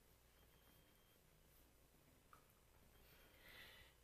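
Near silence: room tone, with a faint tick a little past halfway and a soft brief rustle near the end.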